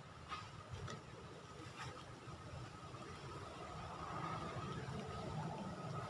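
A faint, low engine rumble from a distant motor vehicle, slowly growing louder, with a few light clicks in the first two seconds.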